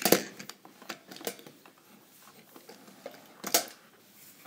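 Die-cast metal toy trains clicking and clacking as they are set down and shuffled into a row on a tabletop: a sharp clack right at the start, another about three and a half seconds in, and light ticks between.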